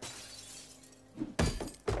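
Glass shattering as a basketball knocks a framed picture off a wall: a sudden crash trailing off into tinkling, then two heavy knocks about a second and a half in. This is a sound effect on the animated episode's soundtrack.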